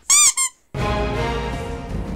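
Two quick high-pitched squeaks, each rising and then falling in pitch, like a squeezed rubber squeaky toy, as the paper model's lower back is pressed. Background music starts just under a second in.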